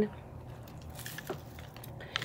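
Faint handling noise with a few small clicks as a hand turns a handmade paper mini-journal ornament hanging on an artificial Christmas tree.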